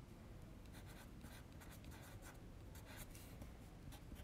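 Faint scratching of a Caran d'Ache Luminance colored pencil on sketchbook paper, writing a short hand-lettered label in quick, uneven strokes.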